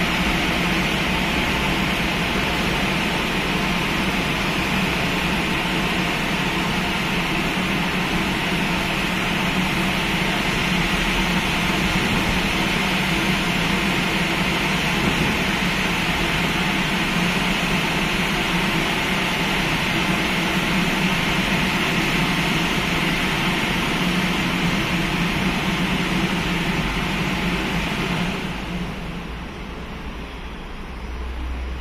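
Tunnel car wash machinery running steadily as a car is conveyed out of the exit: a loud, even rushing noise over a low hum. The noise shuts down and fades about two seconds before the end.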